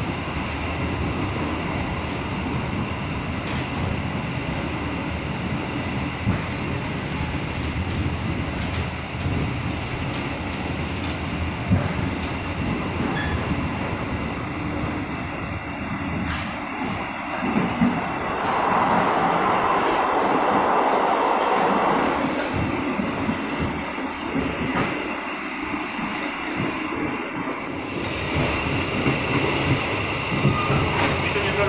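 Steady rumble and rattle of a passenger train running on the rails, heard from inside a carriage, with a few sharp knocks along the way. About two-thirds of the way through, the running noise swells into a louder rushing for a few seconds before settling back.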